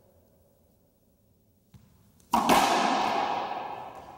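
Racquetball drive serve: a faint tap, then about two seconds in one loud crack of the racquet driving the ball hard into the front wall. It rings through the enclosed court and dies away over about a second and a half.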